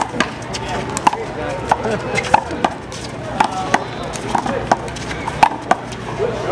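One-wall handball rally: the rubber ball smacked by bare hands and slapping off the concrete wall and court, about a dozen sharp hits roughly two a second.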